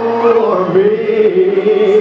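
Male voice holding one long sung note with a slight waver, over a karaoke backing track.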